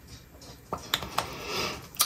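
Plastic Fenty lip-gloss tube being handled and its wand pushed back in: three light clicks about a second in, then soft rubbing.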